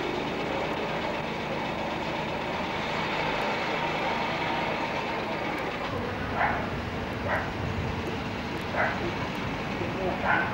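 Steady running of a Škoda Favorit's engine as the car creeps along a narrow street. From about six seconds in, a dog barks four times at uneven intervals.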